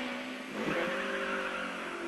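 BMW E30 M3 rally car's four-cylinder engine running under load, heard from inside the cabin, with a short dip in the engine note about half a second in.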